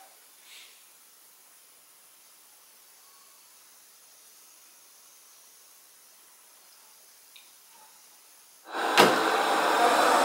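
Near silence with faint room tone for most of the clip. Near the end a Kyvol Cybovac E20 robot vacuum cleaner is suddenly heard running, a loud, steady whir of its suction motor.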